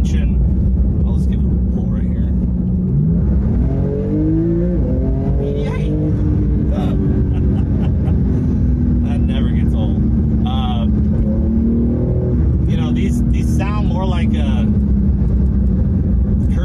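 Porsche 911 GT2 RS's twin-turbo flat-six, heard from inside the cabin, pulling hard under acceleration: it rises steeply in pitch, drops with a dual-clutch upshift about six seconds in, then climbs slowly again until another upshift near the end.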